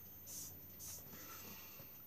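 Quiet room tone in a small room, with two faint short hisses in the first second.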